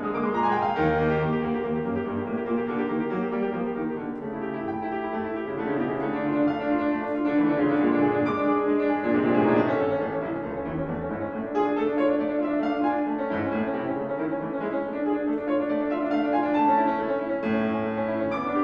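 Steinway concert grand piano playing a solo classical piece: a continuous flow of notes with no pause.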